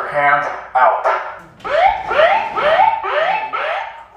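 Handheld megaphone blaring: a rough, pitched burst in the first second or so, then a fast repeating rising whoop like a siren, about three a second, until near the end.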